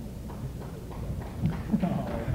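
Steady low hum of an old lecture-hall recording, with faint voice sounds in the second half.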